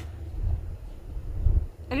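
A cow coughing: a short, harsh burst right at the start, over a steady low rumble.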